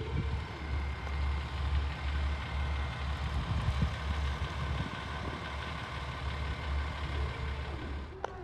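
Diesel railcars idling in a train yard: a steady low engine rumble.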